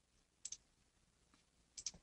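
Faint computer mouse button clicks: a quick pair about half a second in and another pair near the end.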